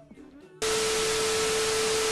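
Loud TV static hiss with a steady beep tone, a glitch transition sound effect, cutting in suddenly about half a second in and stopping abruptly just after the end.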